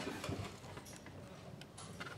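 A few faint, scattered clicks and light taps of a metal baffle clip being handled and fitted over a stud inside a fuel tank.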